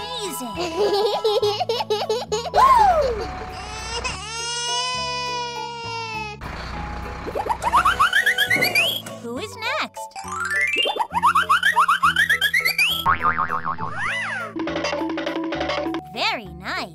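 Cartoon sound effects over children's background music: springy boing-like pitch slides, a held wobbling tone from about four to six seconds in, and runs of quick rising whistle sweeps in the second half.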